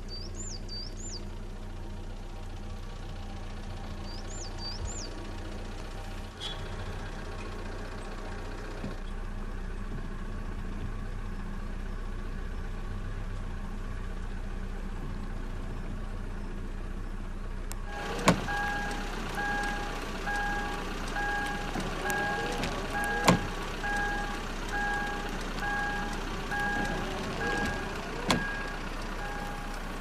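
Steady low engine and road hum of a car driving, heard from inside the vehicle, with a couple of brief high chirps near the start. About two thirds of the way through, a regular electronic beep starts, repeating a little faster than once a second, and three sharp clicks come about five seconds apart.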